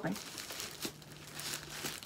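Crinkling, rustling wrapping as a package of fabric is worked open by hand, in irregular bursts.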